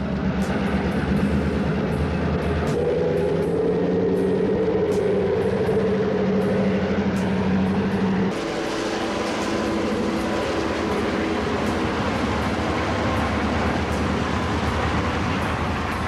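Southern Pacific diesel locomotives running as trains pass: a steady engine drone with a held low tone and a wavering higher one. About eight seconds in it cuts to a different, noisier diesel drone, with light clicks throughout.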